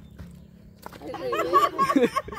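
A single sharp click at the start, a short quiet stretch, then several excited voices calling out and laughing from about a second in.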